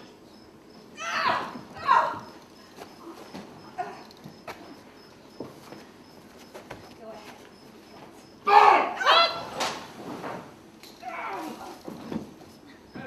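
Women's high-pitched shrieks, each falling in pitch, in two loud clusters: about a second in and again about eight and a half seconds in, with a fainter one near the end and quieter crowd voices between.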